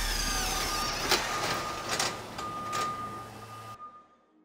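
Electronic sound design closing a title sequence: a noisy wash with glitchy chirping squiggles and a few sharp clicks, fading away to near silence just before the end.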